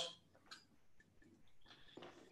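Near silence with a few faint clicks and rustles: a cloth face mask being put on near the microphone, its ear loops pulled over the ears. One click comes about half a second in and a few smaller ones come near the end.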